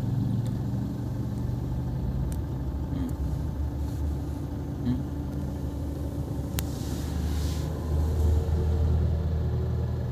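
Car engine and road rumble heard inside the cabin, a steady low hum whose pitch shifts slightly. A single sharp click about six and a half seconds in.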